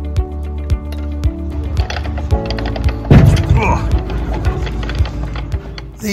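Background music with a steady beat, with voices from about two seconds in. About halfway through comes a heavy low thump: the narrowboat's steel hull bumping against the lock.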